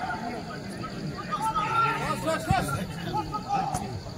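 Several spectators talking and calling out at once, their voices overlapping, with one sharp thump about two and a half seconds in.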